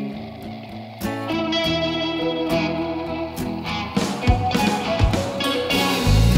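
Instrumental intro of an indie rock song led by electric guitar, with no vocals yet. It gets fuller about a second in and builds again after about four seconds.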